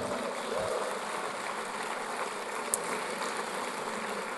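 Audience applauding: a steady spread of clapping that eases off slightly toward the end.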